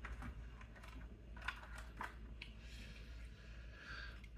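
Faint handling noise: a few light clicks and rattles as a small RC crawler chassis is picked up and turned in the hands, over a low steady room hum.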